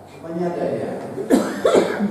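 A man talking into a microphone, broken by two short coughs about a second and a half in.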